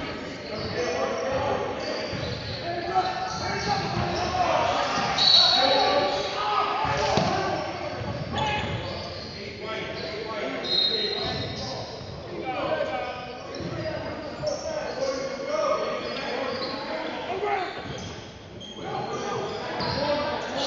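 A basketball bouncing on a hardwood gym floor during a game, with voices of players and spectators echoing in a large hall. Two short, high-pitched tones sound about five and eleven seconds in.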